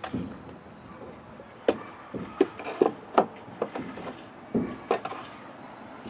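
Wooden hive frames clacking against each other and against the wooden hive box as they are lifted out and set back in: a string of sharp, irregular wooden knocks.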